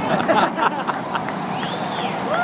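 Jet flyover: a steady loud rushing roar overhead. A short high rising-and-falling tone sounds near the end.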